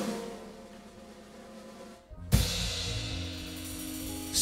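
Live blues band: the last notes of one song fade away, then after a brief break about halfway through, the band comes in on the next song with a drum hit and held guitar and bass notes.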